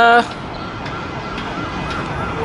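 Steady noise of busy city road traffic, with a faint siren warbling rapidly up and down in the background.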